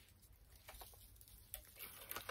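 Faint rustling and crackling of crinkle-cut brown paper shred box filler being lifted out by hand. It is barely audible at first, with a few light crackles from about halfway through, the clearest about one and a half seconds in.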